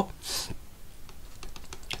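Stylus pen tapping and scratching on a tablet screen while handwriting, a scatter of light, irregular clicks.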